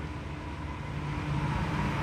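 A steady low rumble of background noise with a faint hum, slowly growing louder, in a pause in the conversation.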